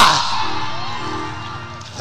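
A preacher's shouted word through a church sound system, cutting off right at the start and echoing away over about two seconds, with a soft held musical chord underneath.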